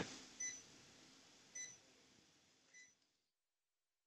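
Near silence with three faint electronic beeps from a patient monitor, about one a second; the sound then drops out entirely near the end.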